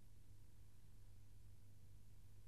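Near silence: a faint steady low hum and hiss.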